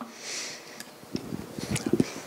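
A short sniff close to a handheld microphone, followed by a few faint clicks.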